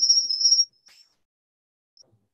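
Steady high-pitched whistle from a microphone and loudspeaker setup, a thin single tone that cuts off suddenly under a second in.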